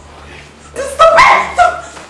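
Two loud, short, bark-like yelping cries, about a second in and again half a second later.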